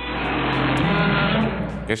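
A harsh, rumbling growl sound effect, dubbed in as the toy Godzilla's answer, lasting about two seconds and cutting off suddenly.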